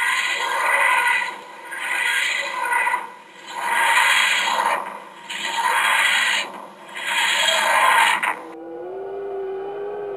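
The TARDIS materialisation sound from Doctor Who: a grinding, scraping swell that rises and fades five times, about every one and a half seconds. It cuts off suddenly about eight seconds in, and a single steady held tone follows.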